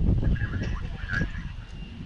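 A bird calling in short repeated notes, about two a second, over a low wind rumble on the microphone that is loudest at the start.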